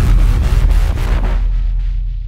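Cinematic logo-reveal sound effect: the tail of a deep boom rumbling on, with a flickering, static-like crackle above it that thins out about halfway through, the whole fading gradually.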